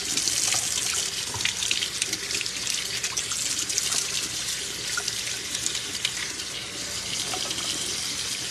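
Kitchen tap running a steady stream into the sink as greens are rinsed by hand in a metal strainer, with a few light clicks and knocks from the handling.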